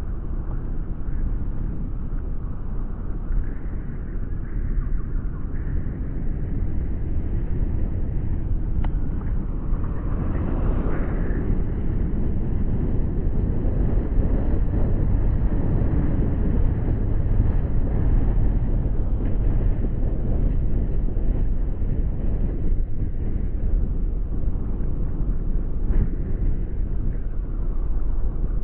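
Car driving slowly over a cobblestone road: a steady low rumble of the tyres on the stone paving, which sets the car shaking.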